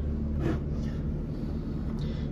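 Car engine idling with a steady low drone.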